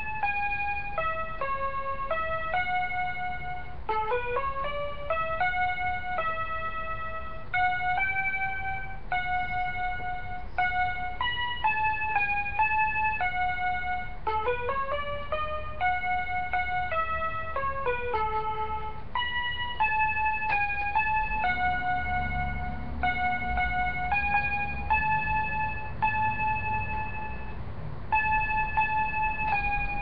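Small electronic mini keyboard playing a single-line melody in a piano voice, one note at a time, with quick rising runs of notes about four seconds and fourteen seconds in.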